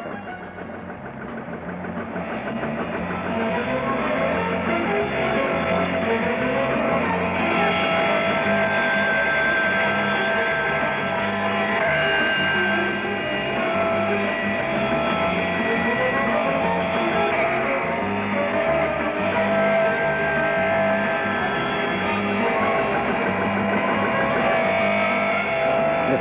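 Instrumental background music with plucked guitar and bass, growing louder over the first few seconds and then holding steady.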